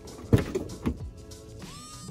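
Car door unlatched and swung open, with a sharp click about a third of a second in and a smaller knock shortly after, over background music.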